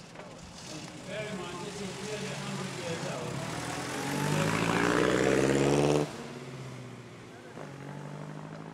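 Edwardian car's engine pulling away from the start line, rising in pitch and growing louder as it accelerates close by, then cut off abruptly about six seconds in; after that it is fainter as the car climbs away.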